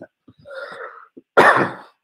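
A man draws a breath, then lets out a single loud, short cough-like burst of air about a second and a half in.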